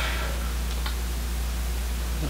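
Steady low hum with an even hiss, room noise between words, with a soft hiss fading away in the first half second.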